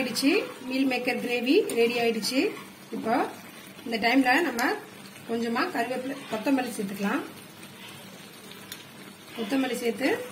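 A person talking in bursts in Tamil over a pan of gravy sizzling faintly on the stove.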